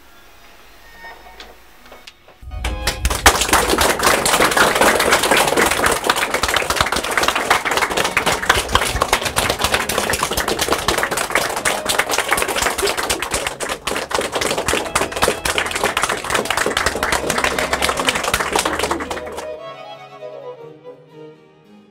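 Audience applauding: a dense, even clapping that starts suddenly a couple of seconds in, goes on for about seventeen seconds and dies away just before the end.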